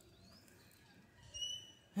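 A bird calling: one short, steady, high whistled note about halfway through, with a fainter rising chirp near the start, over quiet outdoor background.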